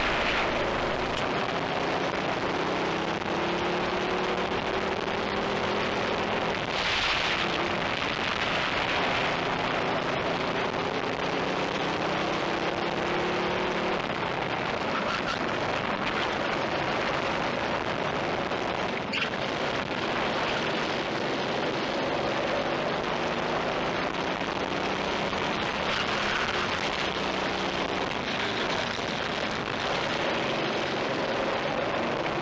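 Racing kart engine heard from the onboard camera, its pitch climbing steadily as it accelerates and dropping back as it eases off, several times over. A heavy rush of wind and track noise runs under the engine throughout.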